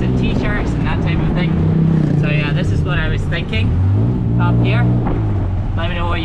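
Tuk-tuk engine running as the vehicle drives, its low hum rising and falling in pitch with changes of speed. A man's voice comes in over it in snatches.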